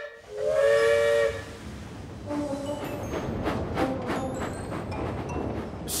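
Steam locomotive whistle blows once, a loud two-tone blast lasting about a second. It is followed by quieter, rhythmic steam chuffing and hiss.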